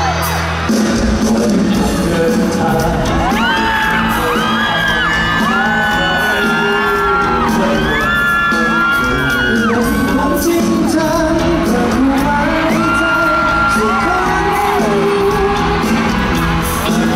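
A pop song performed live by a group of singers, with held and sliding vocal lines over band accompaniment, heard from the audience in a large hall.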